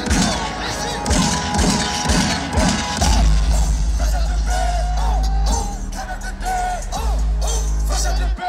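Live hip-hop music played loud over a festival PA, heard from the crowd through a phone microphone, with voices over the beat; a heavy bass line comes in strongly about three seconds in.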